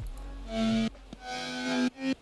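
Serum software synth lead playing a monophonic line, two held notes and the start of a third, with a slight fast vibrato from an LFO modulating its master tune.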